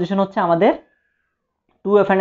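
A man's voice speaking for under a second, ending on one drawn-out word whose pitch dips and rises again. Then dead silence, until his voice starts again near the end.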